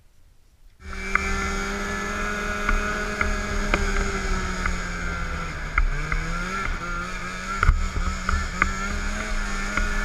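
Snowmobile engine running at a steady pitch, starting abruptly about a second in, with a brief dip and recovery in pitch near the middle. A few sharp knocks sound over it.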